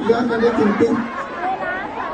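People talking, with several voices overlapping in the second half.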